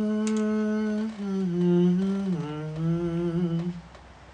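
A man humming with his mouth closed, a slow tune of three long held notes, each lower than the last, trailing off just before the end.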